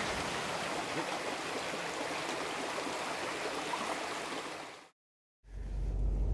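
Steady rushing noise of running water, with no pauses, fading out just before five seconds in. After a brief silence a low vehicle-cabin hum begins near the end.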